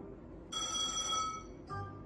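Electronic win chime of a Merkur Fruitinator Plus slot machine: a bright, bell-like ringing from about half a second in that lasts most of a second, then a short lower tone near the end. It signals a winning line.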